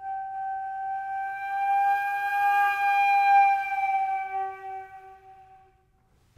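One long note on a gold flute, swelling to a loud peak a little past the middle and then fading away before the end. It is played with tense lip pressure in the crescendo, so the pitch creeps sharp as the note grows and sags as it fades, and the sound and the intonation suffer.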